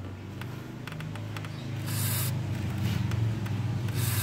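Aerosol lubricant spray hissing through a red extension straw in one short burst about two seconds in, sprayed onto a scooter's throttle cable to keep it from sticking. A steady low hum runs underneath.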